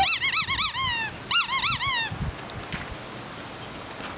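Squeaky toy ball squeezed in quick repeated squeaks, each rising and falling in pitch, in two bursts of four or five during the first two seconds.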